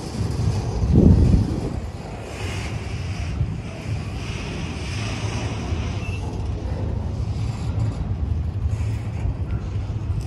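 Double-stack intermodal well cars of a freight train rolling past on the rails, a steady low rumble of wheels and cars, with wind buffeting the microphone and a louder buffet about a second in.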